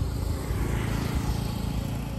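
Street traffic: a motor vehicle passing close by, its engine a steady low hum over the road noise.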